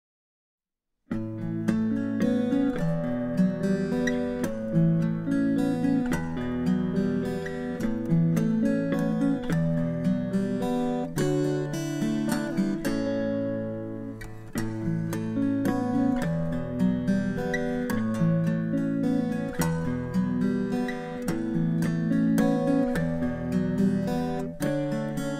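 Acoustic guitar playing an instrumental introduction, single notes plucked in a steady flowing pattern. It comes in after about a second of silence and dips briefly about halfway through.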